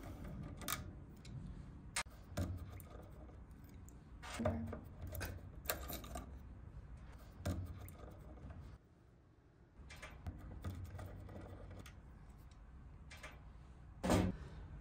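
Insulated screwdriver backing out the screws of a terminal block: faint, irregular light clicks and scrapes of metal on metal, roughly one every second or so, with a short quiet spell about nine seconds in.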